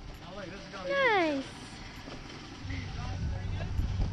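A voice calls out in one long falling tone about a second in. A little past halfway a steady low vehicle engine hum sets in.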